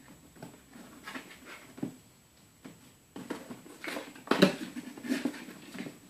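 A cat pawing and scratching at a cardboard box, with scattered rustles and scrapes that grow busier partway through and a sharp knock against the cardboard about four and a half seconds in.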